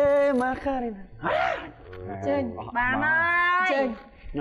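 Animated exclamations in a person's voice: a breathy gasp about a second in, then a long, high-pitched vocal call that rises in pitch near the end.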